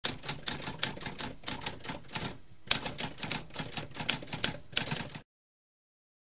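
Typewriter sound effect: a rapid run of key strikes clacking several times a second, with a brief pause near the middle. It cuts off about five seconds in.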